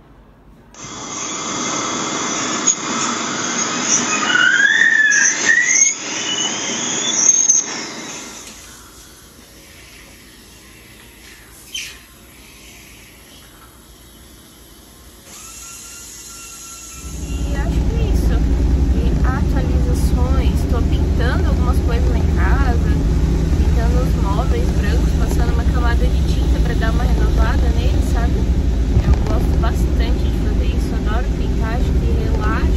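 High-pitched squeal of dental cleaning equipment, with short rising whistles in it. Then, after a quieter stretch, a steady low road rumble inside a moving car starts suddenly about seventeen seconds in.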